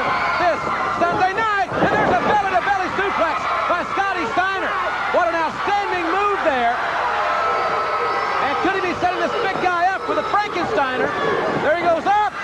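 Continuous speech throughout: a television wrestling commentator talking.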